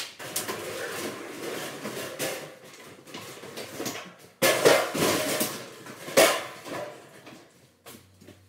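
Rustling, then several loud clattering knocks about halfway through and another sharp knock a little later.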